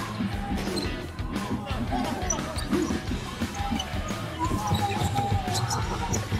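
A basketball bouncing on a wooden gym floor as it is dribbled in play, with arena background music and its steady bass running underneath.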